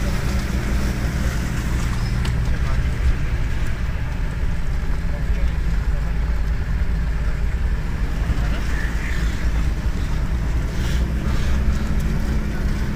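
Jeep engine running with a steady low drone as the vehicle drives slowly along a dirt track, heard from inside the cab.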